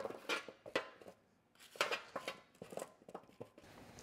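Oiled carrot and red onion pieces tipped from a stainless-steel bowl onto a parchment-lined baking tray, with a spoon scraping them out of the bowl. The result is a quiet, irregular scatter of soft thuds and light metal scrapes.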